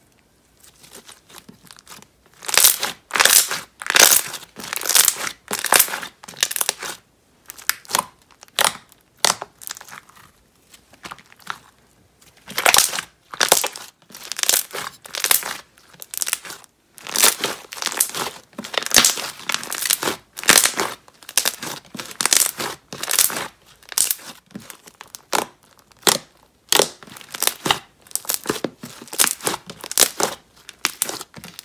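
Thick slime squeezed and kneaded by hand, giving bursts of crackling and popping from trapped air bubbles, about one or two squeezes a second. The squeezing pauses briefly near the start and about a third of the way in.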